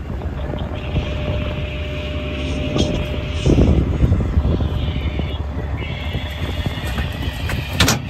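Ram dually pickup's engine idling with a steady low hum. A thin steady whine stops about three and a half seconds in, and a louder rough rumble with knocks follows for about a second.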